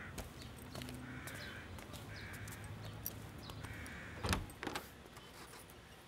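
Crows cawing several times over a quiet background, with a dull thump a little past four seconds in and a smaller knock just after it.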